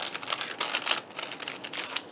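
Clear plastic cellophane packet crinkling and rustling as a sheet of self-adhesive pearls is slid out of it, a quick irregular run of crackles.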